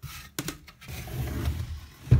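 Carved wood pieces being handled and shifted by hand: a couple of light knocks about half a second in, then wood rubbing and scraping, louder towards the end.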